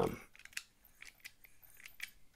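Precision screwdriver bit working the small pocket-clip screw on a titanium folding knife, giving a run of faint, irregular metallic clicks and ticks.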